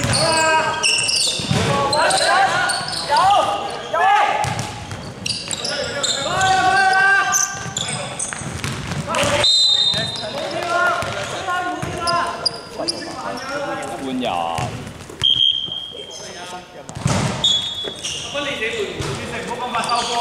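Basketball dribbled on a hardwood gym floor among the shouts of players and spectators, echoing in a large indoor hall.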